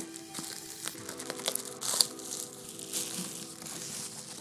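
A plastic mailer bag being torn open and crinkled as a cardboard box is pulled out of it: busy rustling with a few sharp rips, the loudest about two seconds in. Soft music with held notes plays underneath.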